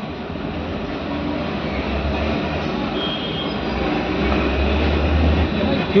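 A steady low rumble with a hiss above it, growing gradually louder.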